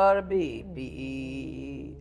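A woman's voice chanting a line of Tibetan liturgy: a short, loud syllable, then a long held note that slowly fades. A low, steady electrical hum runs underneath.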